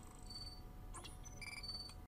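Faint electronic beeps and blips from an animated intro's sound design: one short high beep early, a quick pitch sweep about a second in, then several short beeps in quick succession near the end, over a low hum.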